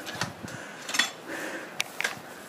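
Footsteps walking on a stony, muddy track, with sharp clicks about once every 0.8 s, the loudest about a second in.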